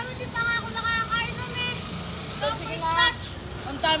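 A young child's high-pitched voice calling out in short bursts, twice, over a steady low rumble of road traffic.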